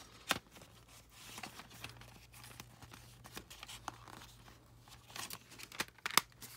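Plastic CD jewel case being handled and shut: a sharp click shortly after the start, faint rustling and handling, then a few more clicks near the end.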